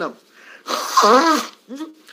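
A man sneezes once, loudly, into a tissue, with a voiced, noisy burst lasting under a second. A couple of short faint sounds follow it.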